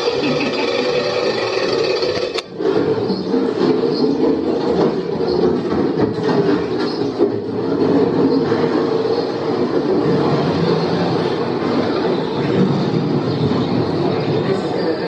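Steady rumbling clatter from a Car Toon Spin ride cab rolling along its track through the dark ride, mixed with the scene's show audio. There is a brief drop and a sharp click about two and a half seconds in.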